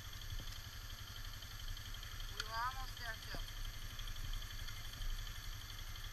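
Engine idling with a steady low rumble, and a short stretch of someone talking about halfway through.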